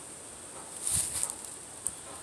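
Small plastic toys being handled and shifted inside a plastic milk crate: a brief rustle and clatter about a second in, then a small click near the end.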